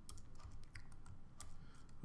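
Typing on a computer keyboard: a run of faint, irregularly spaced key clicks as a word is typed.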